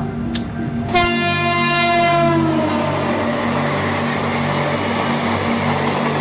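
A train horn sounds suddenly about a second in, its pitch sagging slightly as it fades over a couple of seconds into the steady running noise of a train.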